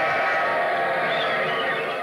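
Crowd-cheer sample played from an E-mu Emax sampler keyboard: a steady, dense wash of cheering.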